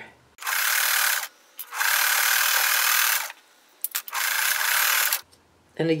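Sewing machine stitching a seam through patchwork fabric in three short runs of a second or so each, with brief stops between.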